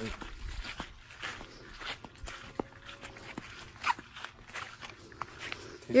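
Footsteps walking over dry grass, a loose string of soft crunches and clicks.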